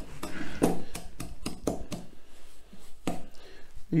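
Wooden spoon knocking and scraping against a glass mixing bowl, irregular strokes of creaming butter and sugar together by hand.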